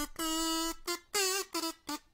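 Yellow plastic kazoo buzzing a short tune: one long held note, then several short notes at changing pitch.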